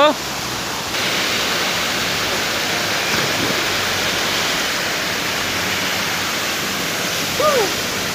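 Steady rushing of river water with splashing as a person jumps in and swims, the noise a little louder from about a second in. A short shout near the end.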